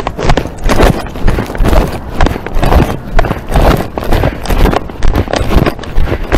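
Handling noise from a covered camera being jostled: repeated knocks and rustles at about two a second, as from being carried against clothing by someone walking.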